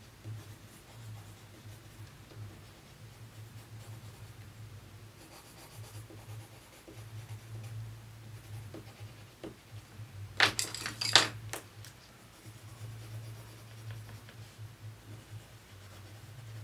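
Colored pencil scratching softly on paper during shading strokes. A little past the middle comes a quick cluster of sharp clicks from pencils being set down and picked up on the table as one green pencil is swapped for another.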